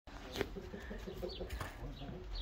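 Faint bird calls in a barn: a run of short, low calls with a couple of high, falling chirps, and a sharp click about half a second in and another near the end.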